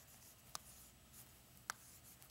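Faint chalk writing on a chalkboard, with two sharp taps of the chalk about half a second in and near the end.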